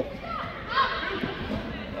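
Voices of spectators and young players calling out in a large indoor sports hall, with one gliding shout about three-quarters of a second in, over a steady murmur of background chatter.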